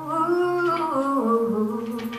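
Solo female voice humming a wordless melody that steps downward in pitch, with an acoustic guitar underneath holding a low note.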